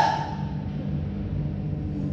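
A woman's held vocal note trails off in the first moment, leaving a steady low rumble of hall background noise.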